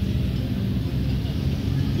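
A steady low rumble of outdoor background noise, with faint voices from the crowd.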